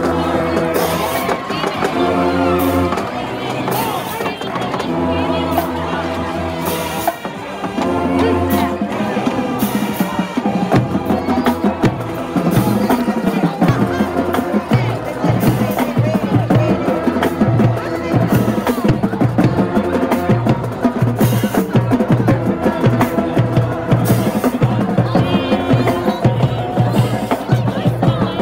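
Marching band brass (sousaphones, trumpets, trombones) playing loud held chords in blocks with short breaks, then from about twelve seconds in a steady, fast drum beat with short brass figures over it.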